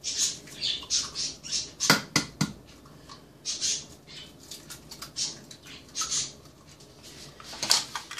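Eggs being cracked at the rim of a glass blender jar and their shells broken apart by hand: a string of short crunching shell sounds, with a few sharp taps on the glass about two seconds in and another near the end.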